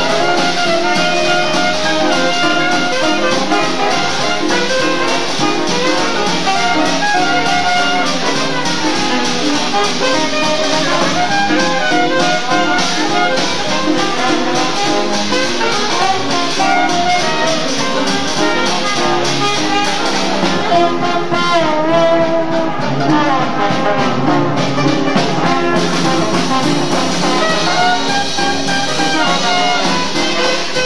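Traditional New Orleans jazz band playing live, with saxophone, cornet and trombone together over banjo, double bass and drums, the beat going steadily throughout.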